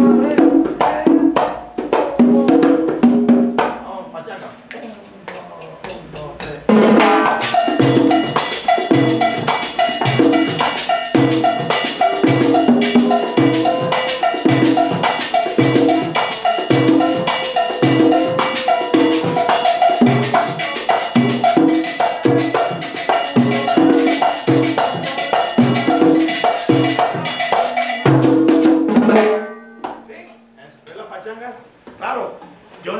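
Latin hand percussion (conga and timbal) playing a pachanga rhythm. About seven seconds in, a fuller band with sustained high notes joins over a steady beat, and the music stops abruptly about a second before the end.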